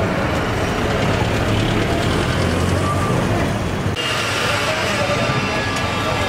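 Street traffic noise, with a steady low engine hum from nearby vehicles; the sound changes abruptly about four seconds in.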